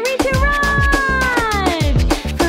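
A long dog-like howl, "arooooou", held about a second and a half and falling in pitch near the end. It sounds over a birthday-song backing with a steady beat.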